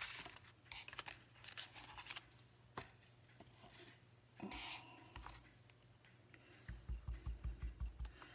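Paper and cardstock rustling and sliding as cards are handled on a craft mat, with a single click and a short scrape. Near the end, a sponge dauber dabbing rapidly into a Soft Suede ink pad, giving a run of soft, low taps about five a second.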